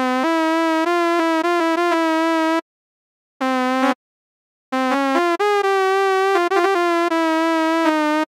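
Reason 9 Malström synthesizer patch played on a keyboard: a buzzy square-wave lead tone being shaped to imitate a shehnai. It plays short melodic phrases of held notes with quick ornamental notes, broken by two brief pauses.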